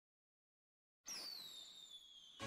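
Near silence, then about a second in a music video's firework sound effect starts suddenly: high whistles falling in pitch over a hiss.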